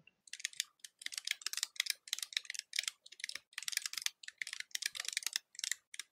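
Fast typing on a computer keyboard: a quick, uneven run of key clicks with short pauses between bursts.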